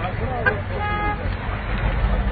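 A short car-horn toot about a second in, over a crowd's voices and a low rumble. A sharp knock comes just before the horn.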